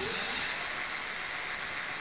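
Electric hub motor and its wheel spinning fast, unloaded on a test stand, under 99% throttle with the controller still pulse-width modulating: a steady hiss that eases slightly toward the end.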